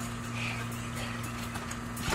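Soft, occasional thuds of children bouncing on a backyard trampoline, over a steady low hum.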